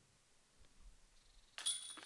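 Near silence, then about one and a half seconds in a faint, short metallic jingle: a disc hitting the chains of a disc golf basket dead center on a made putt.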